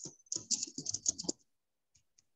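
Typing on a computer keyboard: a quick run of about eight keystrokes in the first second and a half, then it goes silent.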